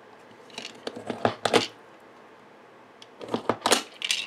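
A screw punch is pushed down through thick card twice, punching two holes. Each press gives a short run of sharp clicks, the first about a second in and the second near the end.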